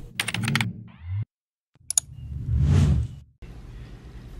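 Edited intro sound effects: a quick run of sharp clicks over a low hum, a moment of dead silence, then a click and a swelling whoosh with a low rumble. After that comes a steady low room hum.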